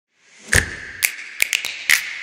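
Percussive hits opening a title intro: about six sharp taps and knocks over a faint sustained high tone, starting about half a second in.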